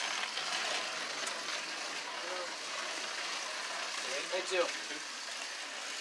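Slot car running on the track: a steady whirring hiss, with faint voices in the background.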